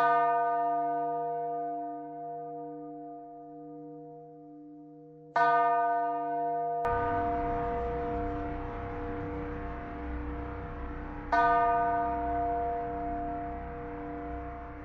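Deep bell-like chime, struck three times about six seconds apart, each stroke ringing out slowly over a sustained low drone, as in an ambient music track. About seven seconds in, a steady background hiss and rumble of room noise suddenly joins under the ringing.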